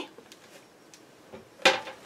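A plastic scoring board is lifted off the desk and put down with a single short clack about one and a half seconds in.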